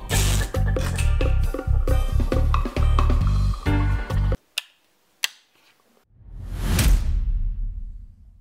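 Dub reggae music with a heavy, rhythmic bassline, cutting off abruptly about four seconds in. Two short clicks follow, then a whoosh that swells up and fades away.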